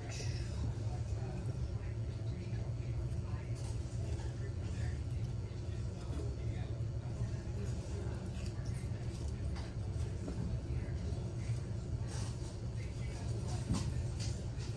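A steady low hum, with faint, scattered scrapes and clicks from a razor blade being run along the edge of waterslide decal film on a stainless steel tumbler.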